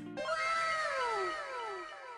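Cat meowing sound effect: a few falling meows that overlap one after another, as if echoed, fading toward the end.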